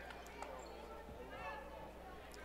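Quiet gymnasium ambience during a stoppage in a basketball game: faint voices of players and spectators, with a couple of soft knocks on the hardwood court.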